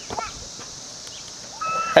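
Steady high-pitched chirring of insects in the background, with a short high call near the end.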